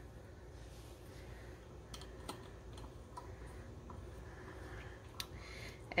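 Mostly quiet, with a few faint scattered clicks and light taps of kitchen utensils being handled, as vanilla is put aside and stirring begins in a glass measuring cup.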